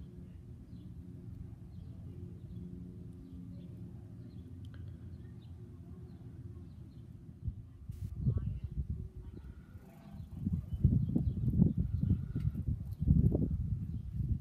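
Outdoor garden ambience: a steady low hum with faint, sparse bird chirps. After a click about eight seconds in, irregular low buffeting rumbles from wind on the microphone take over and grow louder.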